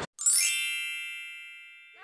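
A single bright chime sound effect: a quick rising shimmer, then a cluster of high ringing tones that fade away over about a second and a half.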